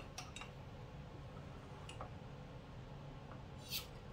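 Faint clicks and scrapes of a metal opener prying at the two-piece lid of a home-canned jar, then near the end a short hiss as the lid lets go: the rush of air of a jar that held a good vacuum seal.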